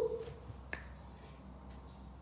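A single sharp click about three-quarters of a second in, over faint room tone.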